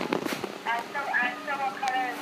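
A toddler's high-pitched singing babble: a string of short sung notes without clear words, after a few brief knocks at the start.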